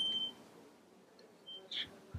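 A high, steady electronic beep that cuts off just after the start, then a second much shorter, fainter beep about one and a half seconds in.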